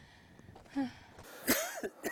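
A person's short throat-clearing noises: a brief low sound just under a second in, then a louder, sharp cough-like burst about a second and a half in.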